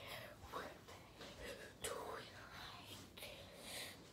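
A person whispering faintly in short phrases.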